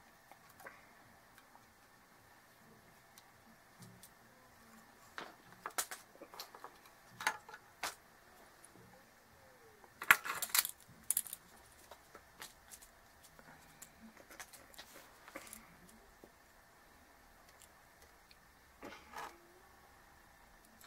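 Pliers and a small circuit board handled on a wooden desk: scattered light clicks and metallic clatter, with the loudest cluster of knocks about ten seconds in.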